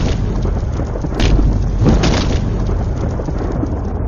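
Thunderstorm sound effect: steady rain and deep rolling thunder, with sharp thunder cracks about a second in and again about two seconds in.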